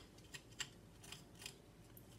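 Near silence with a few faint, short clicks and ticks: hands handling a cut-open chilli pod and its seeds.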